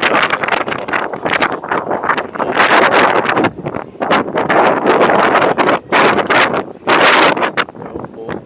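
Wind buffeting the microphone in loud, irregular gusts aboard a moving car ferry.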